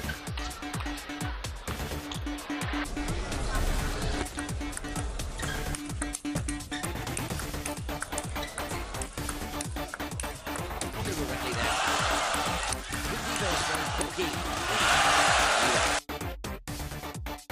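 Table tennis rally heard under background music: the ball clicks sharply off bats and table again and again. Near the end, crowd cheering and applause swell up twice, loudest just before the end.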